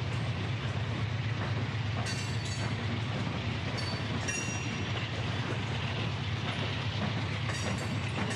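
Chicago & North Western diesel locomotives and loaded coal hoppers rolling past, with a steady low engine drone over rail and wheel noise. Brief high wheel squeals come about two seconds in, around four seconds, and near the end.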